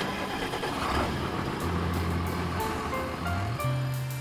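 Background music with a cartoon truck sound effect laid over it: a vehicle rushing past that swells about a second in and fades.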